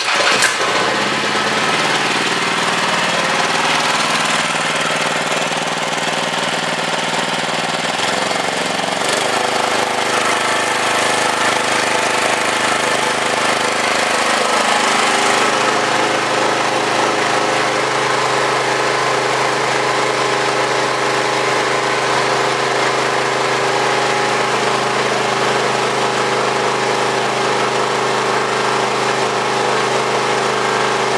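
Small carburetted engine driving a DC generator, running steadily with its electrical load switched off. Its note shifts about eight seconds in, then holds steady.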